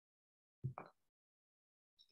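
Near silence, broken a little over half a second in by one brief burst of a person's voice.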